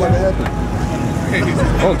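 People in a crowd talking over a low steady rumble.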